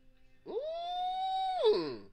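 A single long, high-pitched vocal call that slides up, holds one steady note for about a second, then slides down and stops.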